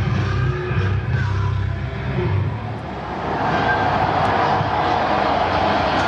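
Live rock band playing from a festival stage, heard at a distance through a camcorder microphone. About three seconds in, the music gives way to a louder, steady noise with wavering tones.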